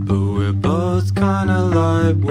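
Indie pop song playing: a sung vocal holding long, gliding notes over a steady, pulsing bass line.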